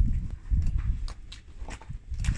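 Hollow plastic balls cracking under a slowly rolling car tyre: a handful of sharp cracks over a low rumble.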